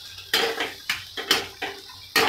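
A spatula scraping and knocking against a kadai while stirring chopped onions frying in butter: four strokes, about two a second, two of them louder.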